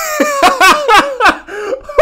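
Loud, hearty laughter coming in rapid bursts, high-pitched in places.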